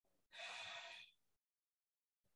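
A woman's short, soft breathy exhale of effort during a dumbbell row, lasting under a second, then near silence.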